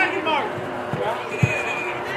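Two dull thumps of a soccer ball being kicked or bouncing on the grass, about a second in and half a second apart, over the talk and calls of spectators.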